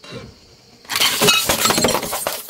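A car tyre crushing a pile of plastic disposable lighters on a white plate. About a second in comes a sudden, loud burst of cracking and shattering as the plate breaks and the lighters crunch under the wheel.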